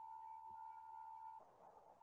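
A faint, steady, single-pitched electronic tone that stops about one and a half seconds in.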